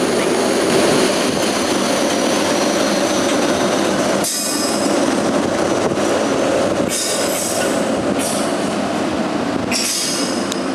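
A Class 90 electric locomotive and its train of coaches running slowly through the station, a steady rumble throughout. Short bursts of high-pitched wheel squeal come about four times in the second half.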